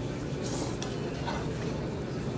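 Utensils stirring and mixing jjajangmyeon noodles in a large ceramic bowl, with a few short scrapes against the bowl, over steady restaurant background noise.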